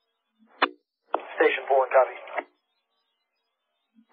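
Two-way radio traffic with the thin, narrow-band sound of a radio channel: a short sharp burst about half a second in, like a radio keying up, then a brief spoken acknowledgment, 'Copy', before the channel drops back to silence.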